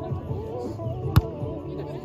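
A single sharp smack of a hand hitting a volleyball about a second in, over background music and chatter.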